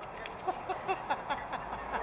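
A man laughing, a quick run of short pitched 'ha' sounds, about five a second.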